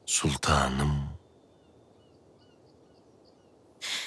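A person sighing aloud: a single voiced breath out lasting about a second at the start. Faint bird chirps sound in the background after it.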